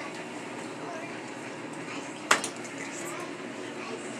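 A single sharp click or knock a little past two seconds in, over quiet room noise and faint talk.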